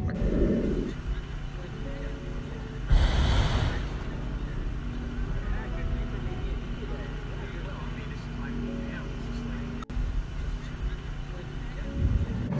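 Street ambience: a steady low rumble of traffic, with a louder rush of noise about three seconds in that lasts about a second.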